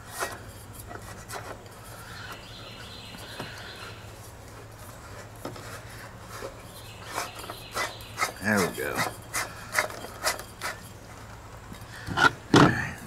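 One-pound propane cylinder being screwed into a Mr. Heater Little Buddy heater: plastic and metal rubbing and scraping, with a quick run of clicks and scrapes in the second half.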